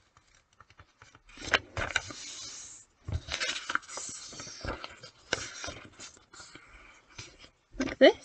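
A sheet of paper being folded in half and creased by hand, with irregular rustling and scraping of the paper sliding over the table. A short, louder knock comes right at the end.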